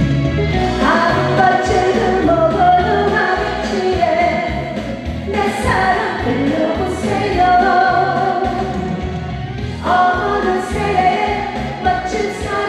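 A woman singing a Korean trot song into a microphone over an accompaniment track with a steady beat.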